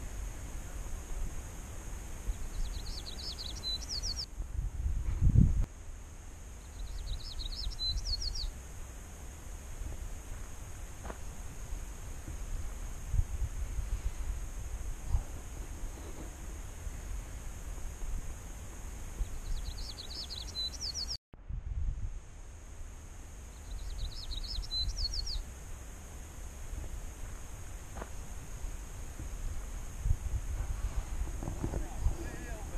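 A small songbird singing a short, high, rapid trilled phrase four times, each about a second and a half long, over a low rumble on the microphone.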